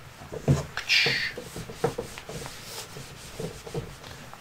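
Handheld whiteboard eraser rubbing dry-erase marker off a whiteboard in irregular strokes, with a brief brighter swipe about a second in.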